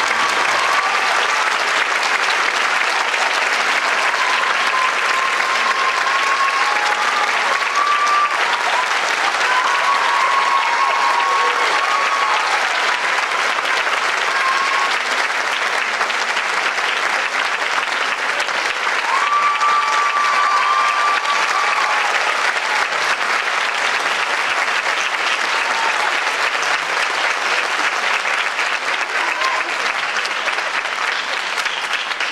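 A theatre audience applauding steadily and loudly at the end of a ballet number, with voices calling out over the clapping. The last note of the recorded music dies away in the first second.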